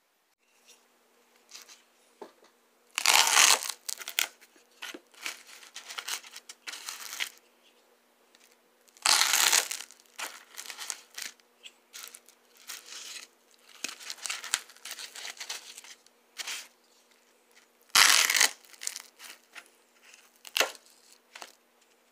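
A knife blade slicing through dense red closed-cell foam, giving crunching, tearing noises: three long, loud cuts about 3, 9 and 18 seconds in, with many short crackles in between.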